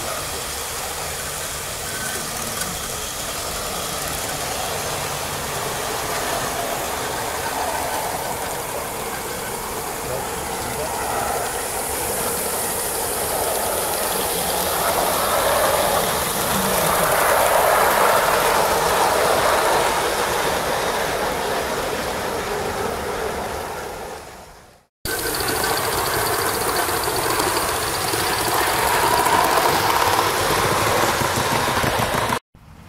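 Aster gauge 1 live steam model of a Bavarian S 2/6 running on garden-railway track, its wheels rolling on the rails with the exhaust steam; the sound grows louder as it nears, peaking a little past the middle. Shortly before the end the sound fades and breaks off to a moment of silence, then a similar train sound resumes.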